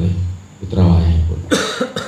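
A man's voice briefly, then a single sharp cough about a second and a half in.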